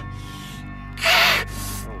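A man's sharp breaths in pain from a centipede bite: a faint breath at the start, a loud, sharp breath about a second in, then a fainter one, over steady background music.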